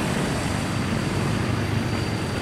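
Steady low rumble of a running vehicle engine, even in level and unchanging.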